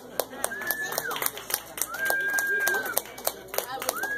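Scattered clapping from a small audience after a song, with a couple of long, high cheers.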